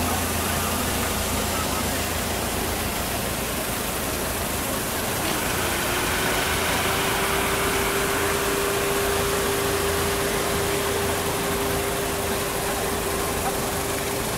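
Car engine idling: a steady low hum under a constant hiss. About halfway through, a steady higher-pitched hum joins it.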